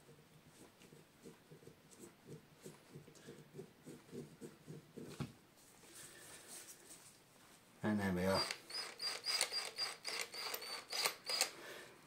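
Faint, repeated rubbing and handling of a polishing cloth. About eight seconds in, a Makita cordless drill runs briefly with a steady high whine and rapid clicking, as its keyless chuck is spun open to release the brass part.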